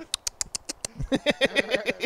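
Rapid clicking made with the mouth, about eight sharp clicks in the first second, imitating a Geiger counter, followed by a man's laughter.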